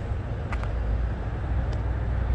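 Outdoor street ambience: a steady low rumble, with a few faint clicks about half a second in and again near the end.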